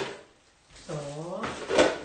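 A clunk of a plastic storage box and its lid being handled near the end, with a short hummed voice sound about a second in.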